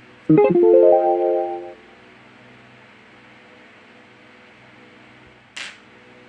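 A short musical sting: one strummed guitar chord, its notes coming in quickly one after another and ringing for about a second and a half. It sits over a faint steady hum, with a brief hiss-like burst near the end.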